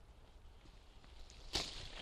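A single sharp snip of hand pruning shears cutting through a young fruit-tree shoot, about a second and a half in, followed by faint rustling of leaves.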